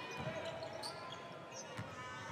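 Basketball being dribbled on a hardwood court, a few separate bounces over a faint background of arena murmur.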